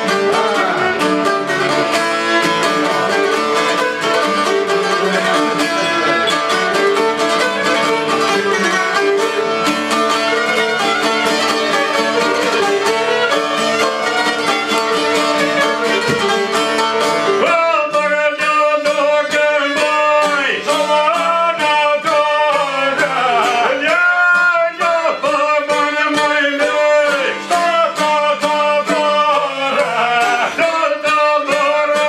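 Albanian folk ensemble: a violin and long-necked plucked lutes of the çifteli kind play a busy instrumental passage. About halfway through, a male voice comes in over the plucked strings, singing ornamented, wavering lines.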